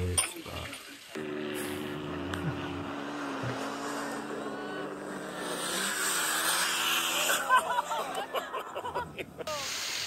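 Side-by-side UTV engine running at a steady pitch on sand dunes, then revving up about halfway through as it launches into a jump, followed by people shouting near the end.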